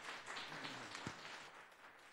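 Audience applauding, the clapping fading away toward the end.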